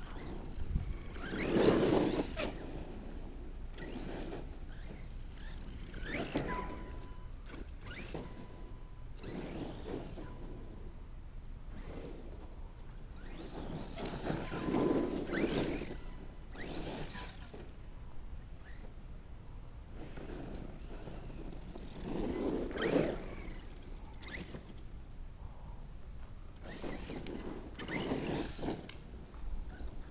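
Redcat Landslide RC truck's brushless electric motor whining up and down in about five bursts of acceleration, its pitch rising and falling with each throttle blip, with the tyres running over dirt and grass.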